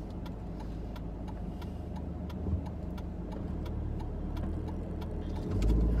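Steady low rumble of engine and road noise inside a moving car's cabin. It grows louder near the end, with faint light clicks above it.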